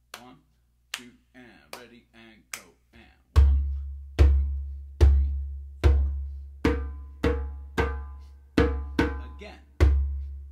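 Djembe with a synthetic head played by hand: after a few faint clicks, four deep bass strokes about a second apart, then five brighter, ringing tone strokes at the edge of the head in the clave rhythm. A new deep bass stroke starts the pattern again near the end.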